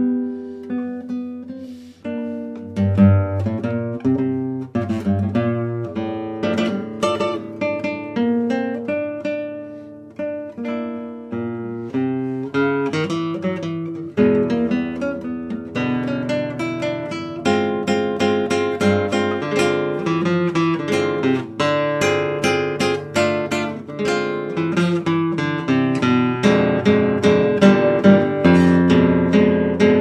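Solo classical guitar playing a busy passage of quick plucked notes over a moving bass line, growing fuller and louder in the second half with ringing chords.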